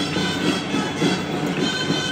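Traditional Catalan dance music played live for a ball de bastonets stick dance, with steady held melody notes over a regular beat, and the dancers' wooden sticks clacking in time.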